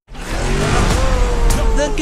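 Film-trailer soundtrack cutting in suddenly out of silence: loud music and sound effects, with a long, slowly falling tone over the mix and a sharp click about one and a half seconds in.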